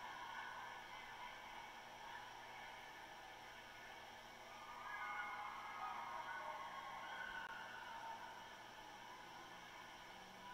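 Faint, indistinct ice-arena ambience, growing a little louder from about five seconds in.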